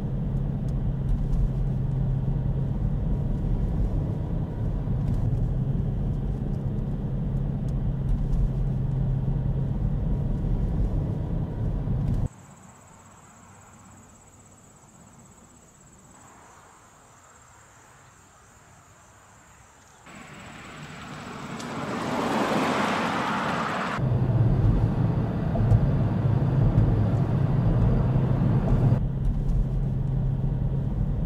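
Car driving, a steady low engine and road rumble heard from inside the cabin. About twelve seconds in it drops to a much quieter outdoor background with a faint high steady tone, and a whooshing noise swells for a few seconds before the car rumble comes back about 24 seconds in.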